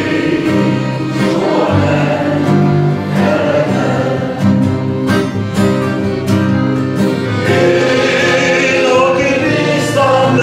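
Live song: a man singing into a microphone, accompanied by a piano accordion holding chords and a strummed acoustic guitar.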